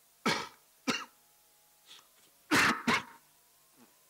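A person coughing: four short coughs in two pairs, the second pair about two and a half seconds in.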